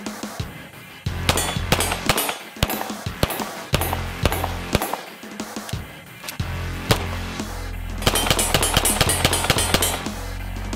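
Beretta M9 9mm pistol fired repeatedly over electronic music with a heavy bass line. Near the end the shots come in a rapid string.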